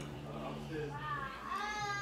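A high-pitched, drawn-out vocal sound that starts about a second in, rising and then falling in pitch, over a steady low hum.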